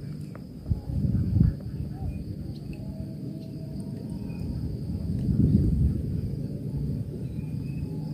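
Low, uneven rumbling noise, swelling about a second in and again around five seconds, over a faint steady high-pitched drone of insects.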